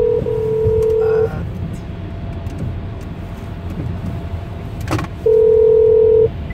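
Telephone ringback tone of an outgoing call, heard over the phone's speaker: a steady two-second ring that stops about a second in, and the next ring starting about five seconds in, the on-off rhythm of a North American ringback. Under it runs the low hum of a car cabin, with a single click just before the second ring.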